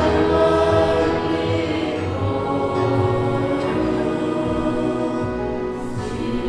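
Choir singing a hymn with instrumental accompaniment, in long held notes.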